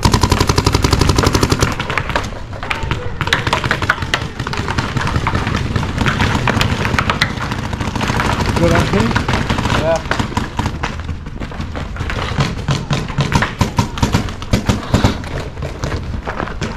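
Electronic paintball markers firing: a fast, machine-gun-like string of shots at the start, then scattered single shots, and more rapid strings near the end.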